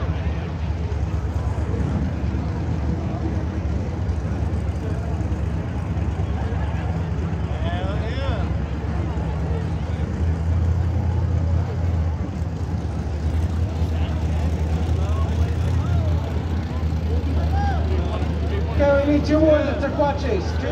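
Steady low engine rumble of idling drag cars waiting to race, with crowd chatter over it; the rumble grows a little stronger about halfway through.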